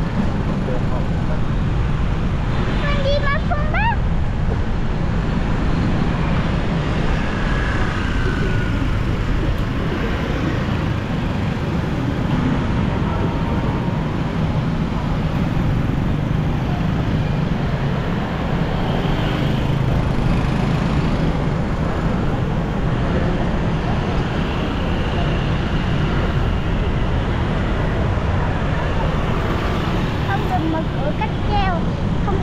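Steady road noise from riding through dense motorbike traffic on a city street: small engines running and wind buffeting the microphone. A brief wavering high tone sounds about three seconds in.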